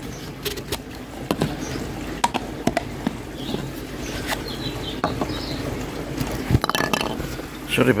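Scattered clicks and knocks from handling close to a phone that has been set down, over a steady low hum.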